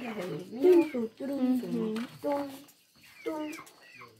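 Voices talking, broken by a short pause a little past halfway.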